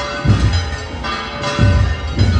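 Church bells ringing together with music, with deep low beats about every second and a quarter.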